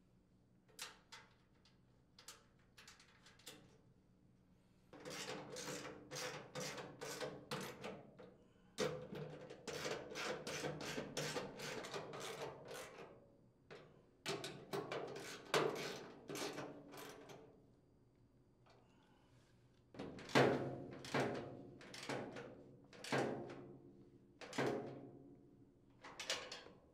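Ratcheting socket wrench clicking in several bursts of rapid strokes as mounting nuts are tightened on a sheet-metal hopper, with a few light metallic taps between them.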